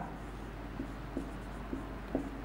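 Marker pen writing on a whiteboard: faint rubbing strokes with a few light ticks as the letters are formed.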